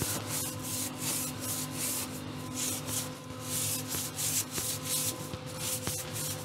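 Repeated rasping strokes of something being rubbed or scrubbed by hand against a hard surface, about two strokes a second, with a faint steady hum underneath.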